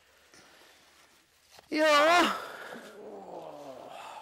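A person's loud, drawn-out 'ooh' with a trembling pitch about two seconds in, sinking into a lower groan that falls away: an effortful groan while sitting down on a stone bench.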